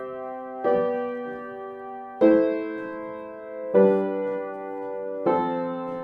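Upright piano playing a slow chord progression up and down the C major scale: a three-note major or minor triad in the right hand over a single bass note in the left. A new chord is struck about every second and a half, four times, each ringing on until the next.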